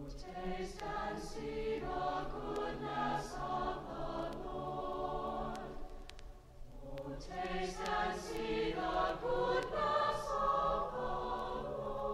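Choir singing a choral vespers setting in two sung phrases, with a brief dip between them about six and a half seconds in.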